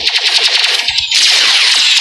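Rapid-fire sci-fi energy blaster shots, a fast clatter of about fifteen shots a second, giving way about a second in to a loud, dense hissing rush of blaster fire.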